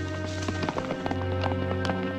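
Horse galloping, irregular hoofbeats on dirt, under background music with long held notes. A sharper knock stands out near the end.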